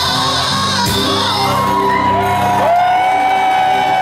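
Live rock band closing a song, with the singer holding one long steady note over guitars, bass and keyboards from about halfway through, while the crowd whoops and shouts.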